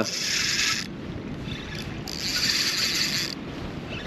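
Fishing reel whirring in two spells of about a second each, one at the start and one about two seconds in, while a hooked fish is played on a bent rod. Underneath is a steady low rush of wind and water.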